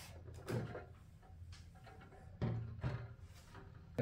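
Plastic Lego bricks knocking as the upper floors of a Lego building are lifted off and set down: a soft knock about half a second in, then a louder clunk and a few light knocks between two and a half and three seconds in.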